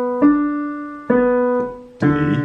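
Digital piano playing single notes of a slow left-hand broken-chord pattern: one note struck about a quarter of a second in and another about a second in, each left to ring and fade.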